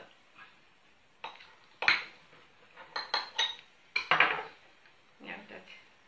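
Knife clinking and scraping against a small glass plate while cutting through a ball of stuffed polenta, then the plate knocking as it is picked up: a handful of sharp clinks, the loudest about two seconds and four seconds in.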